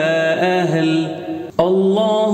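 A man's voice chanting an Arabic salawat in long, melodic held notes, with a short break about one and a half seconds in before the chant comes back in.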